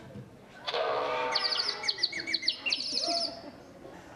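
A small bird twittering: a quick run of many high chirps lasting about two and a half seconds, with a voice underneath as it begins.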